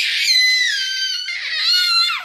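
Toddler girl squealing happily: two long, very high-pitched shrieks, the second falling away at the end.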